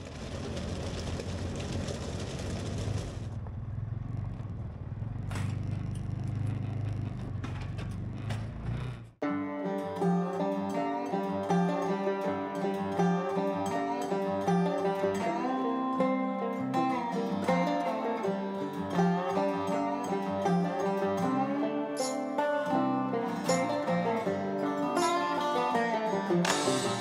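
About nine seconds of steady side-by-side driving noise, engine rumble with tyres on gravel, which then cuts off sharply. Plucked guitar music follows and runs on.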